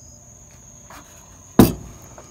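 Crickets chirring steadily as one high, even tone, with a single sharp knock about one and a half seconds in, the loudest sound.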